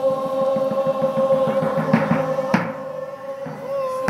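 Group singing of a Tibetan folk song on a long held note, with a drum beating along. Two sharp knocks stand out, one a little past the middle and one at the end.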